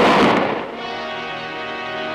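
A single loud rifle shot right at the start, its blast fading over about half a second, followed by a held chord of background music.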